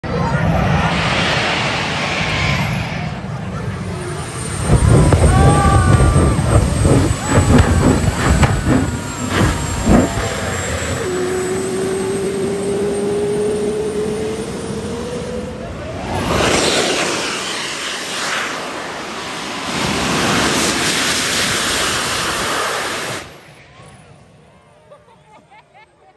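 Small jet turbine engine on a golf cart running, with a thin high whine and loud rough bursts from about five to ten seconds in. A tone rises steadily in the middle, then a broad loud rush of jet exhaust follows and ends abruptly near the end.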